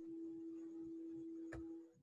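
A faint, steady low tone, held unchanged, with a single click about one and a half seconds in; the tone stops just before the end.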